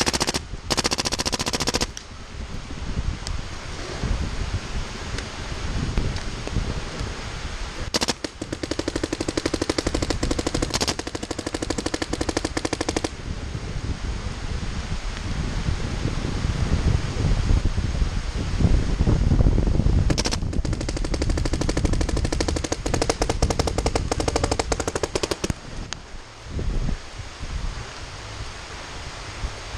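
Paintball markers firing in rapid-fire strings: three long bursts of several seconds each, about a second in, from about eight seconds and from about twenty seconds, with a low rumble between them.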